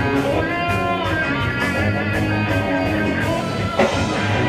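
Live rock band playing an instrumental passage with no vocals: electric guitars over bass and a drum kit keeping a steady beat, with one sharp, loud hit near the end.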